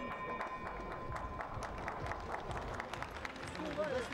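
The ringing tone of a boxing-ring bell, which fits the end of a round, fades out in the first second and a half. Arena crowd noise with scattered clapping runs under it.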